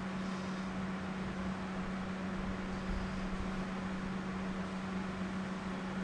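A steady machine hum, a constant low tone over an even hiss, with nothing else standing out.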